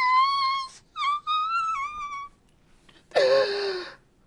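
A woman's voice making two long, high-pitched squeals, then a lower, breathy moan that falls in pitch near the end.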